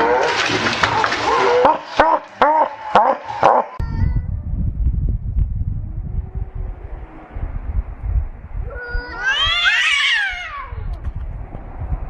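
Splashing with laughter, then low wind rumble on the microphone and a cat's long caterwaul that rises and falls in pitch near the end, from two cats squaring off.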